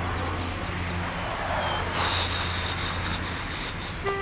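Steady low hum under a hiss of outdoor background noise, with faint high chirping from about halfway through.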